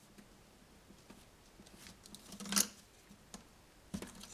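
Faint handling noises of white plastic bus-bar holders on a distribution board: a few light clicks and a brief louder rustle about two and a half seconds in.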